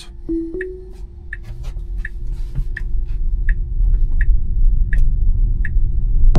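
Tesla Model Y cabin sounds as Full Self-Driving is engaged: a short two-note rising chime about half a second in. Then an evenly spaced ticking of the turn signal about every 0.7 s, over a low road rumble that grows as the car pulls away.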